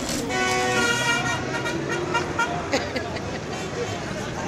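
A car horn sounds steadily for about two seconds near the start amid street traffic, with people talking.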